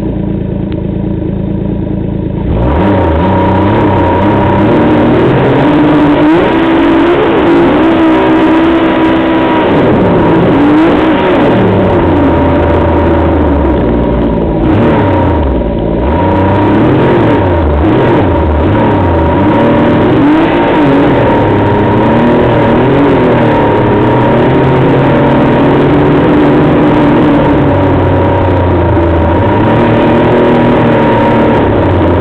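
Snowmobile engine idling, then throttled up about two and a half seconds in and run hard, its pitch rising and falling as the throttle changes, with a steady whine above it.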